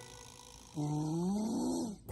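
A lion roar sound effect, the MGM logo roar: one growling roar that rises and then falls in pitch, lasting about a second, starting a little under a second in.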